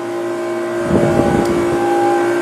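A machine's steady hum with a fixed pitch, and low rumbling handling noise on the microphone about a second in as the phone is swung around.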